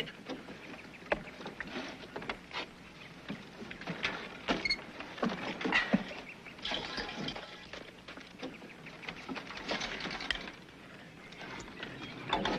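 Irregular knocks, clanks and creaks of hands working on a makeshift steam-fired machine, scattered through the whole stretch with no steady rhythm.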